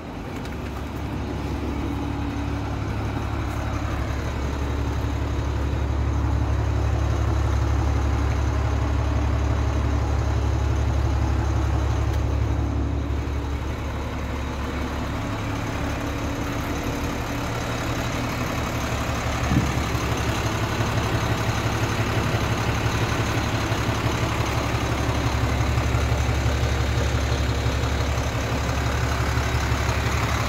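Heavy truck's diesel engine idling steadily, a low even drone.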